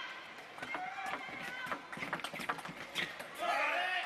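Table tennis rally: the ball clicks sharply off the bats and the table in quick succession, a few strikes a second, over hall crowd noise.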